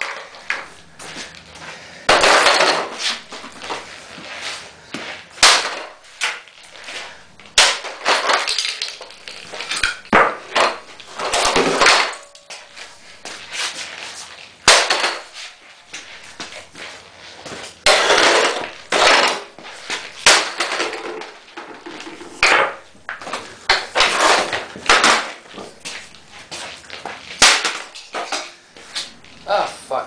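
A plastic upright vacuum cleaner being smashed apart with repeated heavy blows, irregularly every second or so. The plastic housing cracks, and broken parts clatter on the concrete floor.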